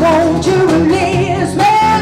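Live acoustic band: a woman singing into a microphone over electric bass, cajon and acoustic guitar, her voice wavering on each note and holding one long high note near the end.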